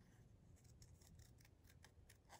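Scissors snipping through a printed decal sheet: a series of faint, quick cuts as a butterfly decal is trimmed out.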